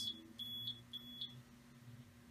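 The HistoPro 414 linear stainer's keypad beeping as its buttons are pressed: three short high beeps about half a second apart, each press raising the number of dips by one.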